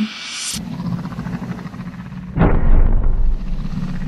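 Trailer sound design: a low droning music bed, then a sudden deep boom hit about two and a half seconds in, with a heavy bass tail.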